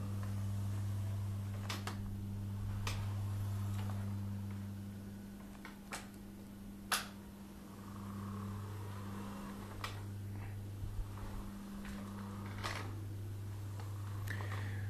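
Powered wheelchair's electric drive motors humming as the chair is driven, the hum easing off and picking up again as the speed changes, with a few sharp clicks scattered through.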